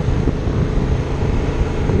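Wind noise buffeting the microphone over the Yamaha FZ-07's 689 cc parallel-twin engine, running steadily while the motorcycle rides along.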